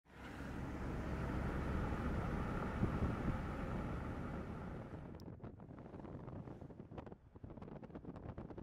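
Wind and road noise from a moving car, a steady rush that drops away suddenly about five seconds in, leaving a quieter rumble with scattered light clicks.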